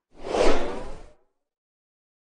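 A single whoosh sound effect accompanying an animated logo. It swells quickly and fades away within about a second.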